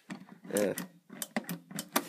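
A quick run of sharp clicks and taps in the second half, from hands handling a metal computer case.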